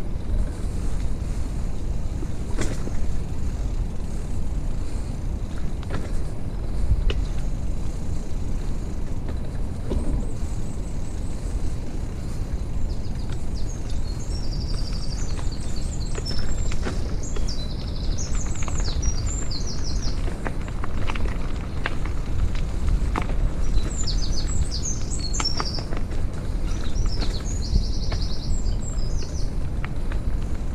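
Wheels rolling over a rough earth path, a steady low rumble with scattered small clicks. Songbirds sing short, rapid high trills over it, once around the middle and again near the end.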